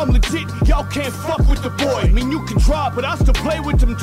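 Bass-boosted trap music: a heavy bass hit about every two-thirds of a second under a vocal line.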